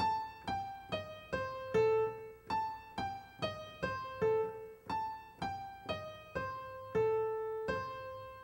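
Piano played one note at a time at a slow practice tempo, about two notes a second: a short right-hand jazz lick repeated over and over, each pass ending on a longer held note.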